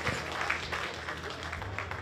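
Light, scattered applause from a seated crowd, uneven claps over a low steady hum.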